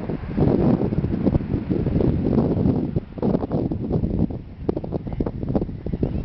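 Wind buffeting the camera's microphone: a loud, uneven low rumble that eases a little in the second half.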